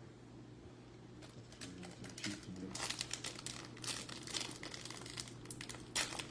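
Foil wrapper of a Bowman baseball card pack crinkling as it is handled and torn open, a run of short irregular crackles starting about a second and a half in.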